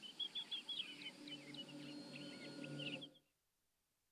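Birds chirping and whistling in quick, short calls over a low steady drone, all cutting off abruptly about three seconds in.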